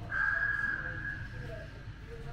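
A single high tone that starts suddenly, holds and then fades over about a second and a half, like a ping, over a constant low rumble.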